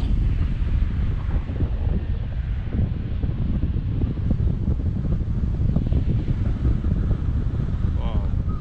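Wind rushing over the microphone of a camera on a selfie stick during a tandem paraglider flight: a loud, continuous low buffeting rumble that rises and falls without pause.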